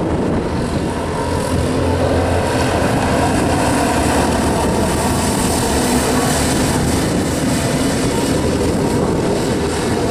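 A pack of dirt-oval racing karts running at speed, their small engines running together in a steady, continuous drone.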